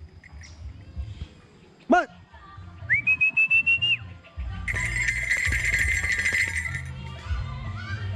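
A falconer's recall whistling to a hawk-eagle: a short call about two seconds in, then a rising, fluttering whistle for about a second, then a longer, breathier whistle lasting about two seconds.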